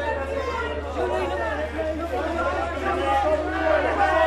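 Many people talking at once, overlapping voices with no single clear speaker, over a steady low hum.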